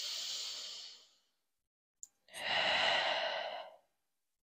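A woman breathing deeply and audibly: a softer breath lasting about a second at the start, then a longer, louder sighing breath about two and a half seconds in.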